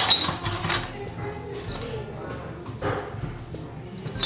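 Glass Christmas ornaments clinking and knocking together as a hand sorts through them in a wicker basket, the clinks loudest in the first second and again briefly near three seconds in.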